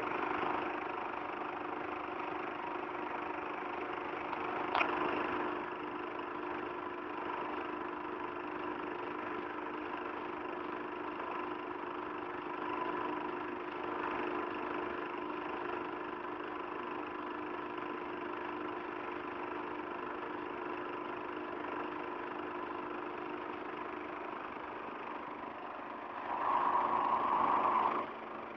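Steady hum of workshop machinery running, with a sharp click about five seconds in and a louder stretch of machine noise near the end.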